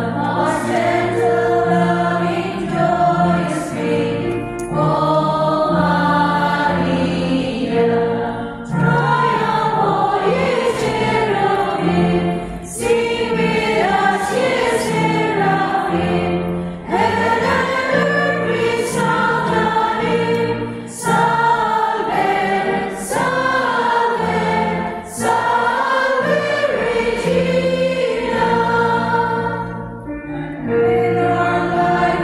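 A choir singing a hymn in sung phrases over held accompanying bass notes that change in steps.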